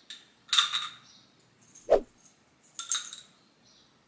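Small metal and glass jewellery pieces clinking as they are set down on clothing: two short jingles about half a second in and near three seconds, with a soft knock in between.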